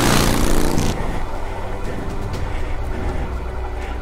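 Suzuki V-Strom 650's V-twin engine running at low speed on a muddy trail: in the first second a rush of noise dies away as the engine note falls, then a steady low rumble.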